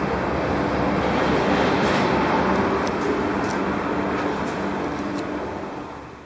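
Steady rushing background noise of a cruise ship cabin, with a faint low hum under it, typical of the ship's air-conditioning ventilation. It fades out near the end.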